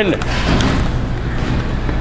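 Bowling alley din: a steady, noisy rumble and clatter with background chatter.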